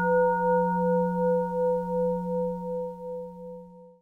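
A struck metal bowl bell, like a Buddhist singing bowl, ringing out and slowly fading with a wavering pulse in its tone, cut off near the end.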